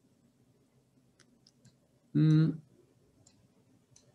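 A few faint, short computer-mouse clicks, and about two seconds in a single held voiced hesitation sound, like an 'ehh', lasting about half a second.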